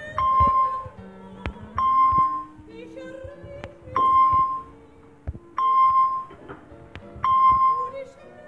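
A spelling quiz app's correct-answer chime, a bright ding sounding five times about every 1.7 seconds as answers are marked right. Background music with a slow, sustained melody plays beneath it.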